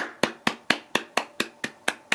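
One person clapping hands steadily, about four claps a second.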